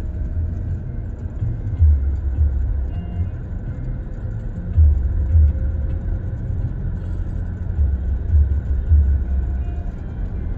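Car driving along a road, heard from inside: a steady low road-and-engine rumble that swells in deeper surges every few seconds.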